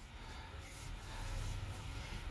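Low, quiet rumble heard from inside the cabin of a 2021 Toyota Sienna hybrid minivan pulling away at low speed, growing slightly louder in the second half.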